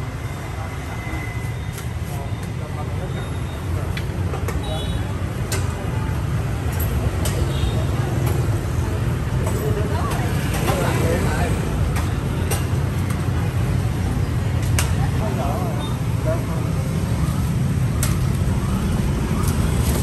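Steady rumble of busy street traffic, mostly motor scooters passing, with faint voices and occasional light clicks mixed in.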